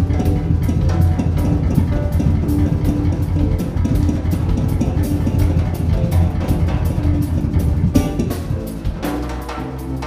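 Live band playing an instrumental passage: drum kit with bass drum and snare over electric keyboard and electric guitar. The drums thin out briefly near the end.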